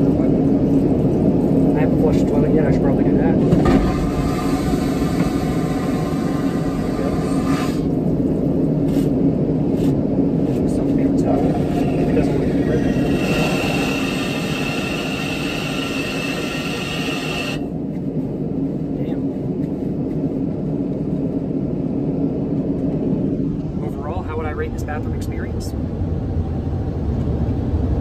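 Steady airliner cabin drone heard inside the aircraft lavatory, with two stretches of rushing hiss, the first about four seconds in and the second, carrying a steady high whine, about thirteen seconds in and cutting off suddenly.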